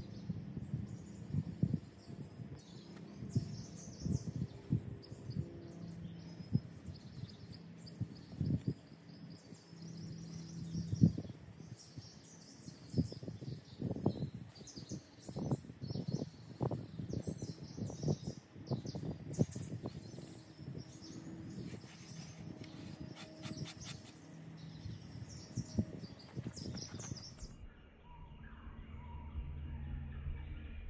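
Hands crumbling and rubbing punkwood into powder: an irregular run of soft crackles and scratches, with birds chirping faintly throughout.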